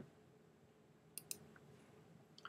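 Near silence, with one faint click at the start and two quick faint clicks a little over a second in.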